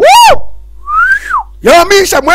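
A whistle: one clean note that rises and then falls, about a second in. It comes between a short high vocal cry at the very start and voices near the end.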